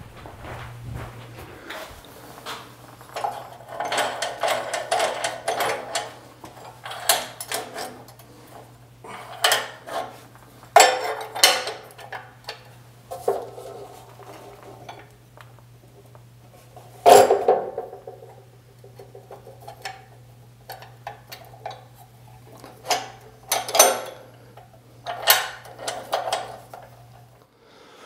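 Irregular metal clinks, knocks and rattles as a steel file is handled and clamped into the vise of an abrasive chop saw, with the saw not running. A steady low hum runs underneath and stops near the end.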